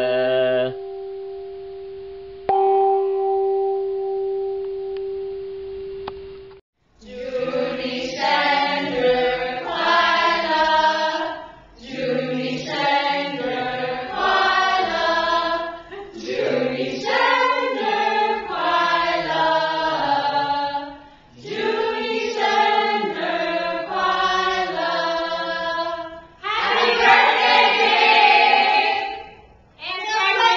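A small hanging gong is struck twice, about two seconds apart, each time ringing with a steady tone that fades away. Then a group of adult voices sings together in chorus, phrase after phrase.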